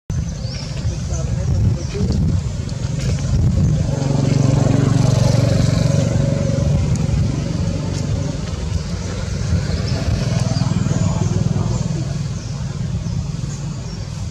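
Steady low hum of a motor vehicle engine running close by, swelling louder a few seconds in, with people's voices mixed in.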